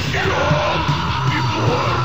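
Melodic doom/death metal: heavy distorted guitars and drums with a yelled vocal line riding over them.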